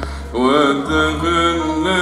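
Arabic orchestral music with a male singer carrying a wavering, ornamented melodic line over a sustained low drone. The sound dips briefly about a third of a second in, then a new phrase begins.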